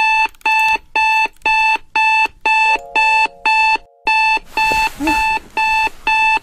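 Electronic alarm clock beeping, short high beeps about two a second in an even rhythm. A hiss comes in under the beeps about two-thirds of the way through.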